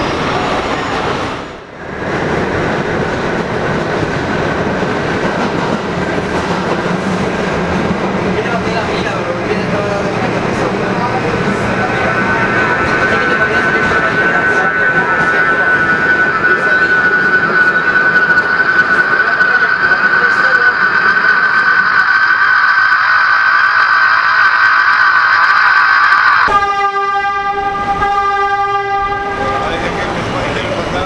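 Subway train running: the steady rumble and rattle of the car, with a high, steady squeal building from about a third of the way in and growing louder. Near the end the squeal gives way to a held pitched tone lasting about three seconds.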